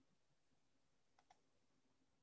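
Near silence: faint room tone, with two quick soft clicks a little over a second in.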